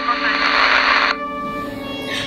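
A burst of static hiss, a little over a second long, that cuts off suddenly, over a sustained low music drone.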